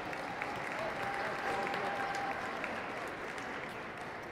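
Audience applauding, the clapping swelling about two seconds in and easing slightly near the end.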